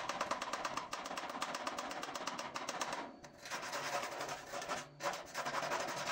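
Rapid clicking and scraping of a tool working slag off a fresh E6013 stick-weld bead on steel, in three runs with short breaks about three and five seconds in.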